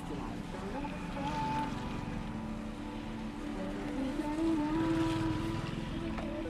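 Engine and road rumble inside a moving van's cabin, with music playing in the background.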